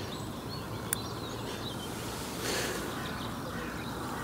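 Steady outdoor background noise with faint, short bird chirps, a single sharp click about a second in, and a brief louder rush of noise around halfway through.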